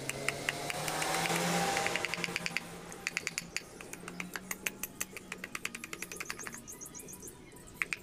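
A fast, even run of light clicking knocks, about four or five a second, as a machete blade works a small block of wood to split it. The knocks stop about six and a half seconds in and start again near the end, over a faint low hum.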